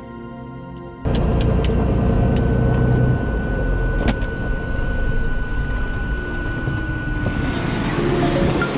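Soft background music for about a second, then a sudden loud, low rumble inside the Cirrus SR22's cockpit from its engine running at low power while it taxis on the ramp. A few sharp clicks and a steady high whine sit over it, and the noise turns hissier near the end.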